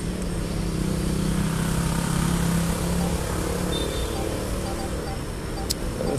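A motor vehicle's engine running close by as a steady hum, fading after about four seconds; a short click near the end.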